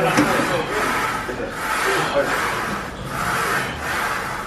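Rasping noise swelling and fading about every second and a half, in time with the reps of an incline Smith machine press.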